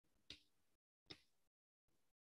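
Near silence over a video-call line, broken by two faint sharp clicks a little under a second apart.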